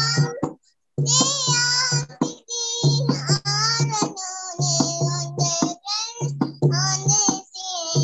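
A young girl singing a devotional bhajan in short phrases, accompanied by low steady harmonium notes. The sound drops out completely twice in the first few seconds, as an online call's audio does.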